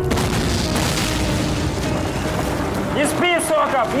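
A shell explosion at the start, its low rumble dying away over the next two seconds, under background music. A man starts shouting orders about three seconds in.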